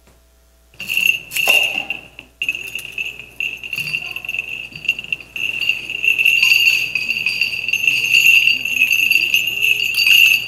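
Small bells on a censer's chains jingling steadily as it is swung, starting about a second in, with a sharp metallic clink shortly after. A faint voice sounds underneath.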